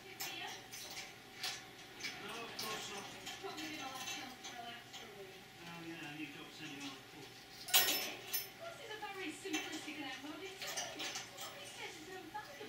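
Budgerigar playing with a string tied to a small brass bell in its cage: a stream of small clicks and clatter from beak, string and bell, with one louder knock about eight seconds in, over soft budgie chatter.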